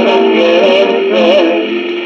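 RCA Victor 78 rpm shellac record playing a cueca: a vocal duet sung over guitar accompaniment, the voices holding long, wavering notes.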